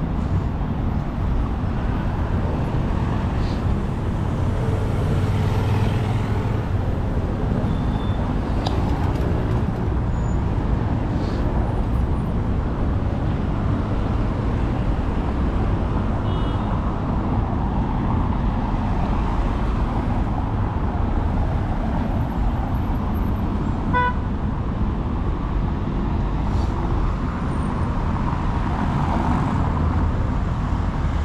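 Steady road traffic, cars and buses driving over cobblestones with a continuous low rumble of tyres and engines. One brief beep sounds about two-thirds of the way through.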